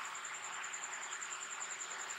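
An insect's high, steady, rapidly pulsing trill over faint room hiss.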